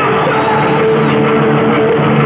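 Heavy metal band playing live: electric guitar notes held steady over drums, with no break in the loud, dense wall of sound.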